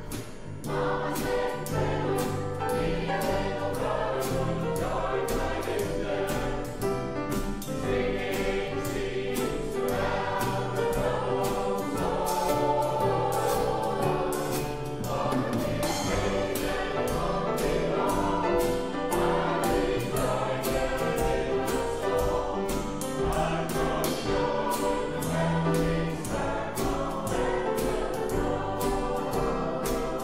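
Mixed close-harmony choir, men's and women's voices together, singing an upbeat country-gospel song over band accompaniment with a steady beat.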